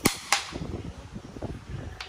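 Xiangqi pieces slapped down onto a wooden board: two sharp clacks about a third of a second apart, then fainter knocks of pieces being handled.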